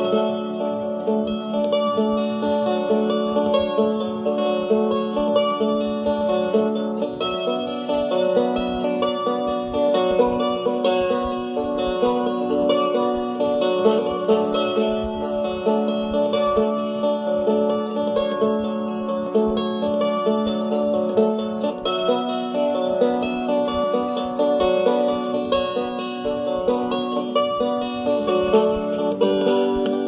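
Instrumental break of an acoustic folk song: plucked strings play over long held notes, with no singing.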